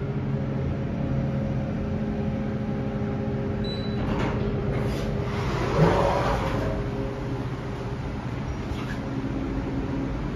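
KONE traction elevator in motion: a steady machine hum with several pitches carries through the ride. About six seconds in a louder rush of noise comes as the car doors slide open, and a fainter hum continues after.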